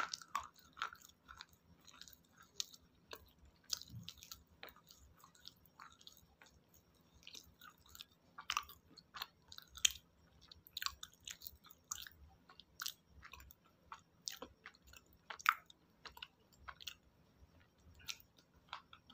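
Close-up mouth sounds of chewing a crunchy chalky mineral, as in slate-eating ASMR. Irregular sharp crunches, every half second to second or so, with softer grinding chews between them.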